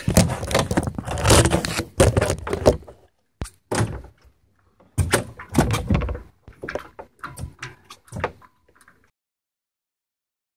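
Rustling and knocks of handling on a fibreglass sailboat, then a scatter of hollow knocks and clunks as a man climbs down through the companionway into the cabin. It all cuts off suddenly about nine seconds in.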